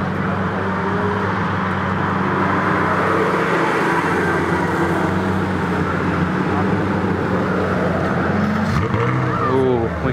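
Lamborghini Aventador V12 engine running as the car pulls out and drives off at low speed, a steady low drone that weakens as it moves away.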